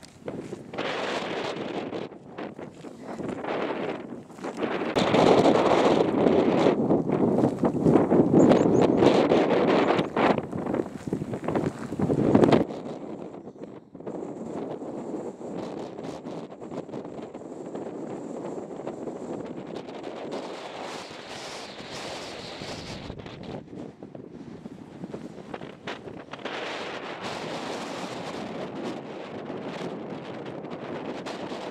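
Strong wind buffeting the microphone, loudest in heavy gusts from about five to twelve seconds in, then easing to a steadier rush.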